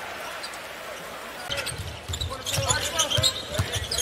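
Crowd murmur in a basketball arena. From about a second and a half in, a basketball is dribbled on the hardwood court in a string of short low bounces.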